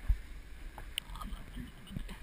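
Low wind and handling rumble on a body-worn action camera as a climber grips mangrove trunks. A dull bump comes just after the start and a sharp click about a second in.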